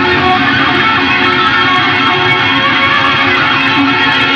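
Live progressive rock band playing an instrumental passage with electric guitar, recorded on an analog cassette tape, with the top end cut off.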